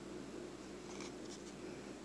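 Faint scratchy rubbing of hands handling a thin wooden board, a few light scrapes over a low steady hum of room tone.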